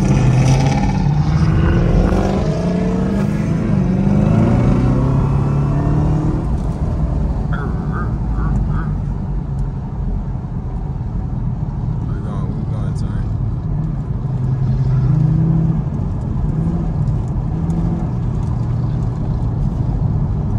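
Chevrolet Camaro ZL1's supercharged V8, heard from inside the cabin, accelerating through the gears. Its pitch climbs and drops back at each shift over the first several seconds, then it runs more steadily and a little quieter, and climbs again about fifteen seconds in.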